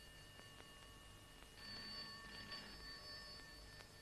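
A telephone ringing faintly, a steady ring of several tones that swells somewhat louder about halfway through.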